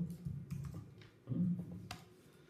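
A few separate keystrokes on a computer keyboard, typing a number into a form field, with the sharpest click near the end.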